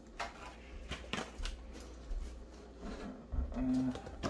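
Scattered light clicks and taps of hand-handled hobby parts, about half a dozen over the first two and a half seconds.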